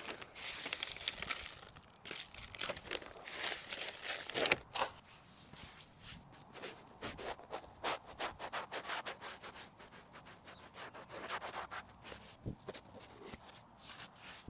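Hands scraping and pushing loose garden soil back around a newly planted shrub: a steady run of short rustles and scrapes.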